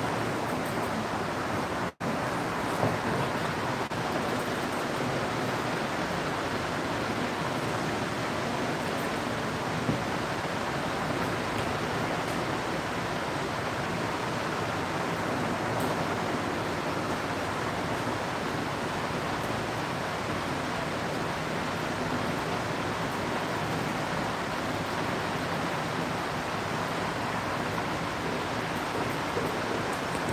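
Steady rushing background noise with no speech. It cuts out for an instant about two seconds in.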